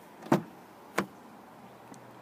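Chevrolet Silverado 2500HD pickup's driver door being opened: the exterior handle is pulled and the latch releases, giving two short clicks about two-thirds of a second apart.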